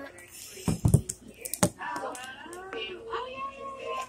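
A few sharp clicks and knocks in the first second and a half from a handheld phone camera being handled, followed by indistinct voices talking.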